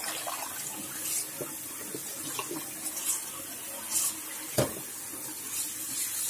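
Kitchen tap running a steady stream into a pot of blanched pork ribs sitting in a stainless steel sink, the water splashing over the meat. A few light knocks are heard, the sharpest about four and a half seconds in.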